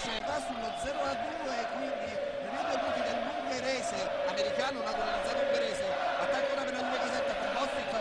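Basketball arena sound during play: a steady crowd din, with the ball bouncing on the hardwood court now and then.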